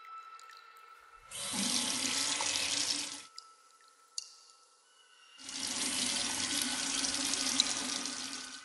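A water tap running into a sink in two spells: it is turned on about a second in and runs for about two seconds, stops, then runs again for about three seconds from about five seconds in. It is the sound of a sink faucet turning on and off.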